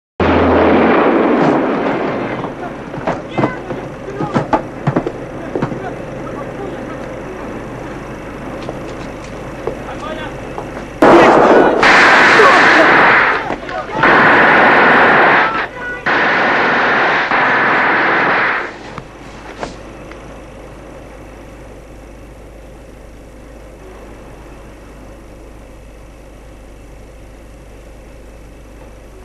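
An explosion at the start, dying away over a couple of seconds, with scattered sharp crackles and pops after it. About eleven seconds in come three long, loud bursts of battle noise, one after another, before it settles to a low steady hum.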